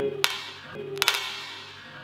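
A raw egg cracking against a man's forehead: a couple of light taps, then one sharp crack about a second in.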